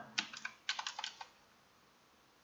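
Typing on a computer keyboard: quick key clicks in two short runs in the first second or so.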